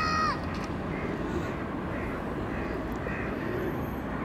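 Steady outdoor background noise with a few faint, distant crow calls. A short held voice sound ends just after the start.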